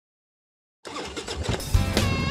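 Silence, then a little under a second in, a motorcycle engine starts running under intro music, with a strong low jolt of the engine near the end.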